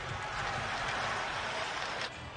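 Ice hockey game sound at the rink: skates scraping the ice and sticks clattering on the puck over a steady arena hiss.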